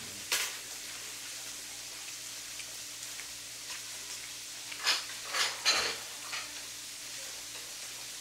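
Meat frying with a steady sizzle. A few short, sharp clicks come over it, one just after the start and three close together about five to six seconds in.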